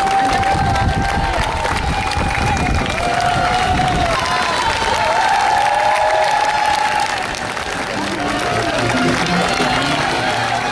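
Roadside crowd applauding and cheering race runners, with music of long held notes over it.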